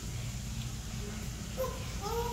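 A young girl whimpering briefly near the end, a short high whine, over a steady low hum.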